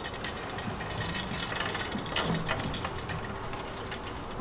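Light handling noise at a hose reel: a garden hose and its fitting being worked by hand, with a few faint clicks and rubbing over a low steady background.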